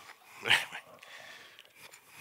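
A single short, sharp vocal burst about half a second in, followed by faint room noise.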